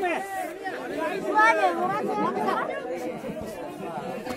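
Several people talking at once close by: a babble of overlapping voices with no clear words.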